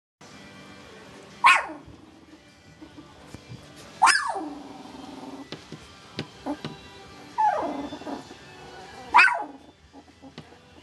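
Two-week-old puppy barking: four short, high yelps a couple of seconds apart, each starting high and dropping sharply in pitch.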